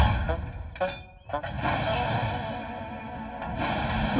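Background music over cartoon steam-locomotive sound effects: a loud burst with a deep rumble at the start, then a steady hiss of escaping steam as the engine strains to pull a coach with broken axles.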